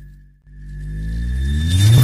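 Synthetic logo-intro sound effect: a descending sweep fades out, and after a brief gap a rising riser swells up, climbing in pitch and loudness toward a music hit.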